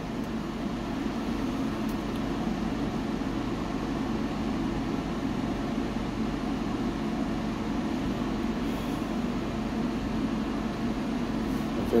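A wood-burning stove with its fire going behind a glass door, giving a steady low hum with a couple of faint ticks in the first two seconds.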